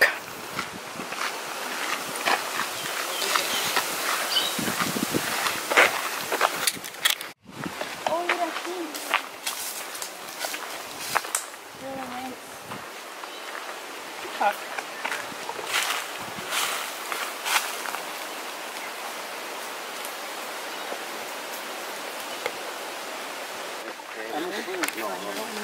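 Footsteps crunching on a dirt and gravel path, with scattered short clicks and a steady outdoor hiss, and a few brief murmured voices in the middle; the footsteps thin out in the second half, leaving mostly the even background hiss.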